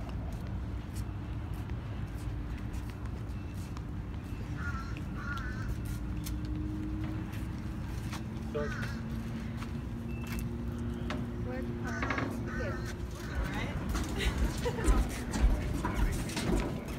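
Voices of people talking in the background over a steady low rumble, with a few short snatches of talk scattered through. Near the end the voices come closer and get louder, along with a run of short clicks.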